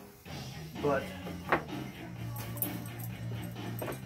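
A wooden block set down on a wooden workbench, giving one sharp knock about a second and a half in, over background music.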